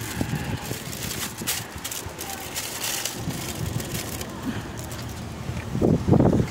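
Handling noise from a handheld phone being carried: rustling and soft, irregular thumps, with a voice starting just before the end.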